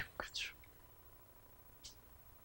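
The breathy, whispered tail of a man's speech in the first half second, then near silence with one short faint hiss near the end.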